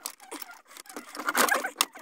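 Hands working under a car dashboard: a quick run of small clicks, scrapes and rattles as parts and wiring are handled, busiest in the second half.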